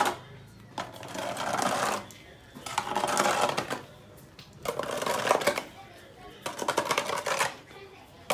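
A long-handled scraper pushed across a wet concrete floor, scraping up cow dung in four strokes, one about every two seconds, each a gritty, crackling scrape of about a second.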